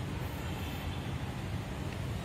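Steady low rumble with a faint hiss of background noise, holding even throughout with no distinct event.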